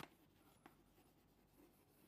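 Very faint chalk writing on a chalkboard: a few light chalk strokes against near silence.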